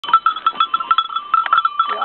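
Bells on fighting goats clanking rapidly and unevenly, a fast jangle of metal strikes with a ringing tone held between them, as the animals shove and butt each other.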